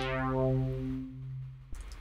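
A single brassy synthesizer note from the Kepler Exo plugin, two slightly detuned oscillators with chorus, played through a resonant filter that an envelope sweeps quickly downward from bright to dark. The note holds one steady pitch, fades gradually and stops shortly before the end.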